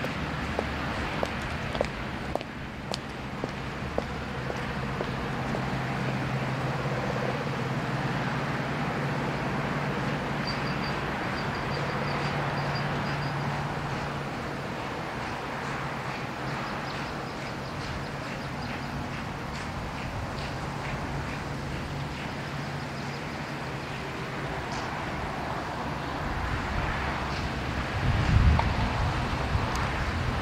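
Outdoor ambience with a steady low hum, like distant traffic or an engine. Near the end, wind buffets the microphone briefly.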